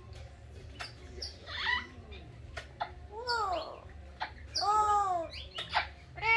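Green Amazon parrot giving a series of squeaky, arching calls, a string of short ones building to a louder, longer call near the end, with sharp clicks in between.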